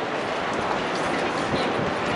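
Hand trolley loaded with boxes rolling over a tarmac street, its small hard wheels making a steady rattle that grows slowly louder as it comes closer.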